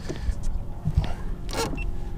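Camera handling noise: a few knocks and clicks over a low rumble, the sharpest click about one and a half seconds in, as the action camera is moved and adjusted.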